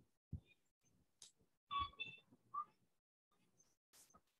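Near silence on a video call, broken by a few faint, brief clicks and a short chirp-like blip nearly two seconds in.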